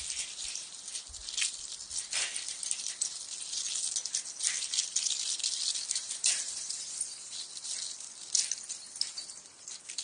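Candle ice: a hand brushing and pressing the loose columns of ice crystals, which clink and rattle against each other in an irregular, high-pitched crackling tinkle.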